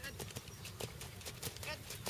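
Hoofbeats of a horse trotting on a sand arena: a steady, even run of hoof strikes.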